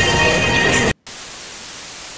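Music that cuts off abruptly just under a second in; after a brief silence, a steady, quieter hiss of television static.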